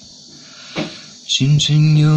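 Young man singing unaccompanied into a microphone: a short breath just under a second in, then he starts a held sung line about 1.4 seconds in.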